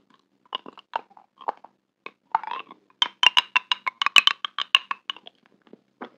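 Close-miked ASMR mouth sounds of biting and chewing a glossy gummy candy: sticky, wet clicks and crackles, with a quick run of sharp clicks, about seven a second, in the middle.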